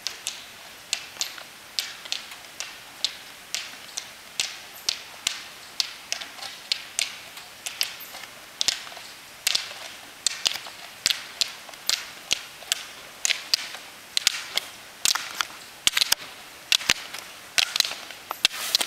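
Rollerski pole tips striking asphalt as skaters pole uphill: sharp clicks about two a second, growing louder as the skier nears, with some plants doubling into quick pairs near the end.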